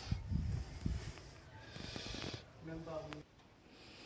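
Faint footsteps and handling bumps in the first second as someone walks through a doorway, then a short hum-like murmur of a voice about three seconds in.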